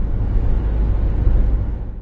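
Car being driven, heard from inside the cabin: a steady low engine and road rumble.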